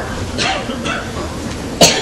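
A person coughing: short, breathy bursts, with one sharp, loud cough near the end.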